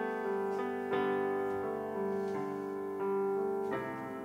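Piano playing slow held chords without singing, a new chord struck about every three-quarters of a second.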